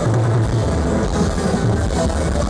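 Live rock band playing loud and without a break, with electric guitars, bass and drums, recorded from within the crowd.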